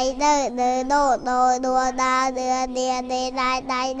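Children's voices chanting a Khmer spelling drill, the same syllable repeated over and over on one steady note about three to four times a second, after a few rising-and-falling syllables in the first second.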